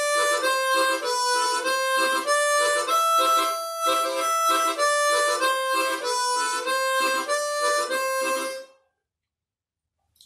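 Chromatic harmonica played with the tongue-slapping (vamping) technique. The tongue strikes the mouthpiece at the start of each held melody note, giving a short percussive chordal attack beneath it. The playing stops about nine seconds in.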